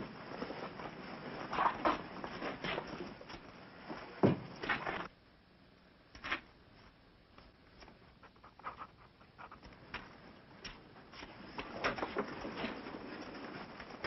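Scattered clicks, knocks and rustles of soldiers' gear and web equipment being handled as packs are taken off. Busier for the first few seconds, then it drops suddenly to faint, sparse ticks and picks up again near the end.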